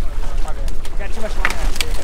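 Wind rumbling on the microphone over splashing water as a hooked wahoo thrashes at the boat's side, with a couple of sharp knocks near the end.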